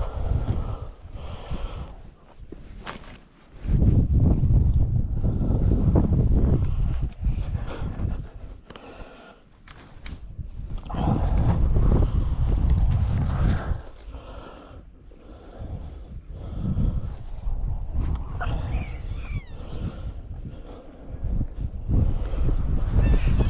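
Wind buffeting the microphone in irregular gusts, with rustling and handling noise as a rabbit is worked out of a nylon long net.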